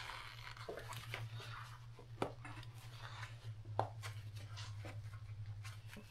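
Light clicks and knocks of gloved hands handling metal parts at a welding turntable, two sharper clicks about two and nearly four seconds in, over a steady low hum.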